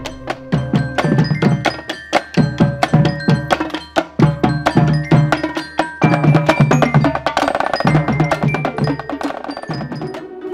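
Marching band drum line playing a quick rhythm on snare and bass drums, with ringing bell-like notes over the drumming.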